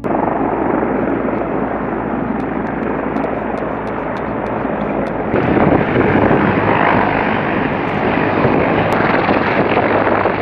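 CH-53 heavy-lift helicopter flying overhead: a dense, steady rotor and turbine noise that gets louder about five seconds in.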